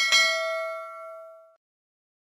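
A bell chime sound effect for a notification bell being clicked. It is struck once and rings out with several clear tones, fading away over about a second and a half.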